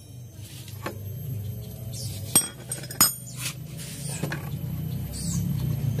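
Loose metal scooter CVT parts and tools clinking as they are handled, with a few sharp metallic clicks in the first half, over a low steady hum.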